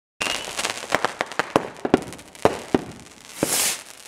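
Consumer fireworks going off: a quick string of sharp bangs and pops at irregular intervals, with a brief high whistle at the start and a hissing rush near the end.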